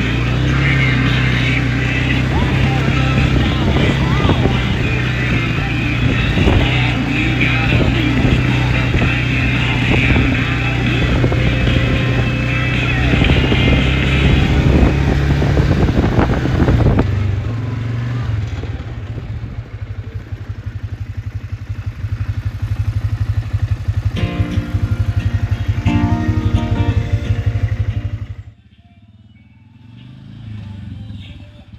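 ATV engine running as it drives over a rough dirt track, under a song with singing for roughly the first half. After about 17 seconds the music falls away and the engine's low, pulsing run is heard on its own, until the sound drops off sharply near the end.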